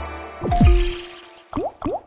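Slot-game sound effects from Big Bass Amazon: the win music fades out, a watery bloop falls in pitch about half a second in and leaves a fading held tone, then two quick rising swoops come near the end.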